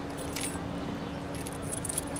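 Small metal objects jingling lightly as they are handled in a tray at a security check, in two brief clusters, over a faint steady hum.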